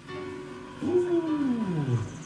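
Amplified sound over a PA system: a held note, then, about a second in, a loud tone that slides steadily down in pitch and stops abruptly.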